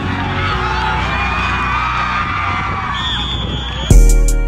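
Crowd noise from the stands at a football game, with cheering and shouting, over a background music track. A steady high whistle-like tone sounds for about a second near the end, and a loud drum beat comes in right at the end.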